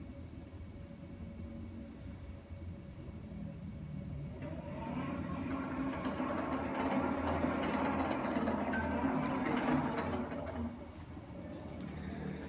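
Small robot's wheel drive motors whirring as it drives across a tiled floor, louder from about four seconds in and easing off near the end, with a few light clicks.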